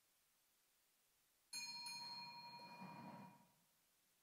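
A small bell struck twice in quick succession about one and a half seconds in, its bright, clear ring fading away over about two seconds.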